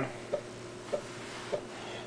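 Floppy disk drive of an Ensoniq EPS 16 Plus sampler reading a kick drum sound off the disk: a quiet steady running noise with three soft clicks about half a second apart.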